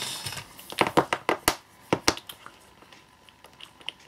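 Four AA nickel-metal hydride batteries handled and set down into a row on a mat: several sharp clicks and taps in the first half, then only faint handling.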